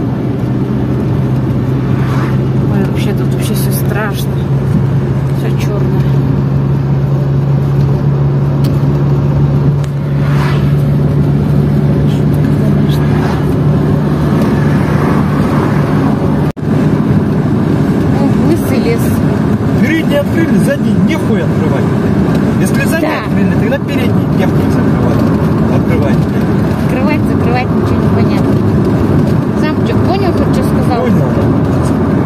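A car driving along a road, heard from inside the cabin: a steady engine and tyre drone with road and wind noise. The sound breaks off for an instant about halfway through.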